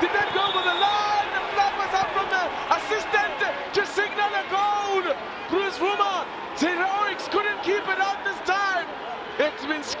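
Footballers' voices shouting on the pitch, many short calls overlapping one after another, with a few sharp knocks mixed in.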